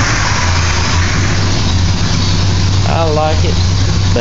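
Engine of a 1969 Chevrolet pickup idling steadily, a low even hum.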